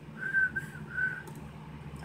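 A person whistling three short, high notes at about the same pitch, close together in the first second or so.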